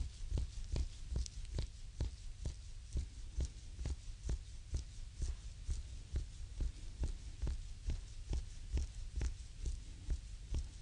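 Close-up binaural sound of a reflexology foot massage: the thumb and fingers press and rub the bare sole in a quick even rhythm of about three strokes a second, each a soft low thump with a brush of skin friction.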